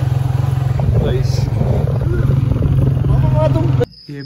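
Motorcycle engine running steadily as the bike is ridden, with voices over it. The engine sound cuts off suddenly near the end.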